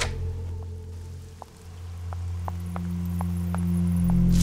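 Background score: a low sustained drone that dips and then swells again, with sparse short ticks that come faster and faster towards the end.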